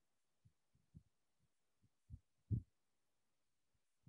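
Near silence broken by several faint, irregular low thumps, the loudest about two and a half seconds in.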